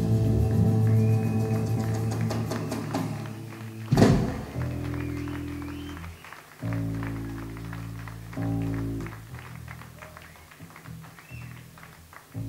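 A live rock band ends a song. A held, fading chord with cymbal wash runs for about four seconds, then one loud final hit rings out. After it, single low notes are played one at a time on an amplified instrument between songs.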